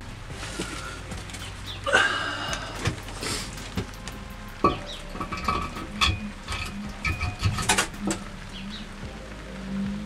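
Toyota 1UZ V8 cylinder head being handled and lowered onto the block over the head studs: irregular light metal clicks and knocks, with a few short ringing tones.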